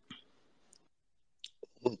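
A pause in a conversation with a few faint, short clicks, then a man starts to say "okay" near the end.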